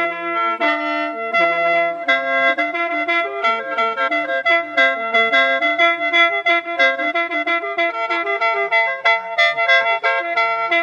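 Khaen, the Isan and Lao bamboo free-reed mouth organ, playing a lam long melody in A minor over steady held drone notes. The melody moves in quick, evenly repeated note attacks against the unchanging drone.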